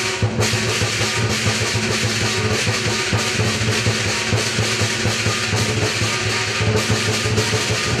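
Southern Chinese lion dance percussion: a big drum beaten in a fast, dense rhythm with clashing cymbals and gong, accompanying the lion's routine.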